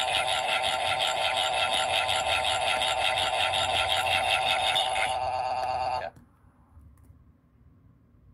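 A loud, steady, high-pitched sound effect with a fast tremble, held for about six seconds and then cut off suddenly.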